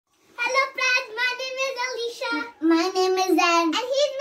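A child singing a short tune, starting about half a second in, with a long held lower note in the second half.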